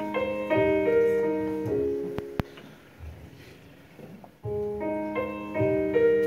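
Piano accompaniment playing a short phrase of chords, pausing for about two and a half seconds, then playing the same phrase again as the introduction to a musical-theatre song. Two sharp clicks sound in the pause.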